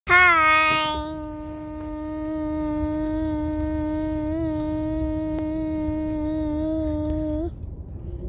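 A young boy's voice holding one long, drawn-out note at a steady pitch, loudest at the start, cut off about seven and a half seconds in. A low road rumble from the moving car lies under it.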